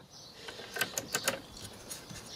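Light handling noise: a quick run of small clicks and rattles a little under a second in, as a hand moves among cables under the record player cabinet.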